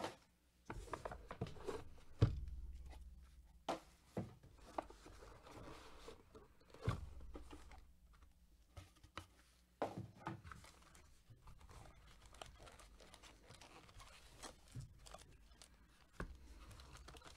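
Cardboard trading-card box being handled: the inner box slides out of its sleeve and plastic-wrapped booster packs are lifted out. There are scattered rustles, scrapes and several sharp knocks of cardboard.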